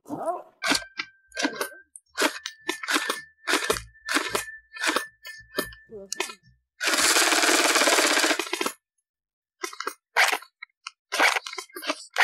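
Bullpup airsoft rifle firing single shots, each a sharp crack, at a rate of two or three a second. About seven seconds in comes a rapid burst of about two seconds, then after a short pause more single shots.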